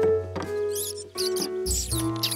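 Cartoon background music with held notes over a bass line; from about a third of the way in, quick high squeaky chirps run over it.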